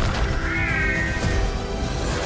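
Film-trailer soundtrack: music over a deep rumble, with a high, wavering cry from about half a second in, lasting about a second.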